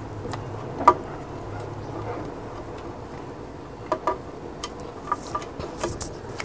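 Scattered light clicks and ticks from hands handling the freshly spliced capacitor wires while wrapping the joints in insulating tape, over a steady low hum.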